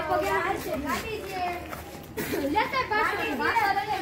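Boys' voices shouting and calling out over one another, excited and fairly high-pitched.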